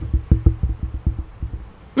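A rapid, irregular run of dull, low knocks, about a dozen in two seconds and fading after the first second: the lecturer's hands bumping the wooden lectern, picked up through its microphones.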